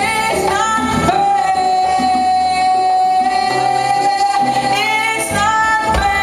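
Female soul singer holding a long, high sustained note live, with sliding vocal runs about a second in and again near the end, over conga and band accompaniment.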